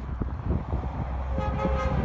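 A tractor-trailer rumbles closer, and about one and a half seconds in its air horn starts up as a steady chord of several notes.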